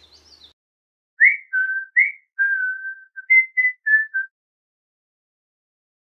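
A person whistling a short tune of about eight notes, a couple of quick upward slides and one longer held note, lasting about three seconds.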